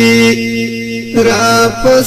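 Pashto tarana sung as a wordless chant: a long held note that breaks off about a third of a second in, a brief softer stretch, then a wavering melodic line returns.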